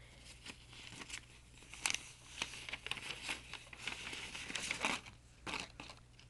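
White paper wrapping of a trading card pack being torn open and unfolded by hand: irregular crinkling and rustling, with a sharper rip about two seconds in and a flurry of rustles between four and five seconds in.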